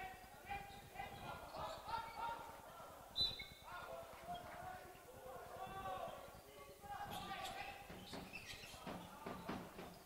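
Faint shouts and calls of players and spectators in a sports hall during a handball match, with the ball bouncing on the wooden court now and then and one sharper knock about three seconds in.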